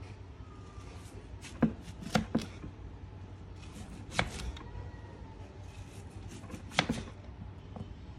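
Kitchen knife slicing an onion into wedges on a wooden cutting board: a handful of sharp, irregularly spaced knocks as the blade hits the board.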